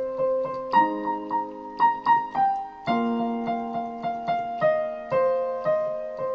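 Electronic keyboard on its piano sound playing a minor-key pop riff: held left-hand chords that change about every two seconds, under right-hand notes struck about three times a second, with the sustain pedal held down.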